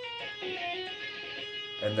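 Electric guitar playing a short legato run: a few sustained notes stepping from one pitch to the next, played with left-hand hammer-ons and pull-offs and slid into the next six-note sequence. A man's voice comes in near the end.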